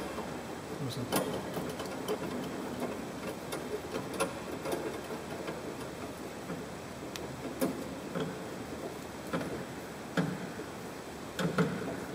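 Electrical marker tape being pulled off its roll and wrapped around a wire bundle tied to a fish tape, with scattered small clicks and crackles from the tape and the handling.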